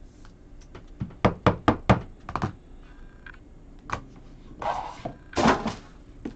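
Trading cards and plastic card holders handled on a tabletop: a quick run of about six sharp taps and knocks, one more tap a little later, then two short rustling scrapes near the end.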